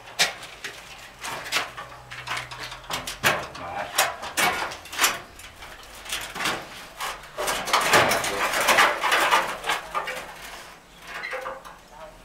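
Steel window frame knocking and scraping against the brick opening as it is pushed into place, a run of sharp knocks with a longer rasping scrape about two-thirds of the way through.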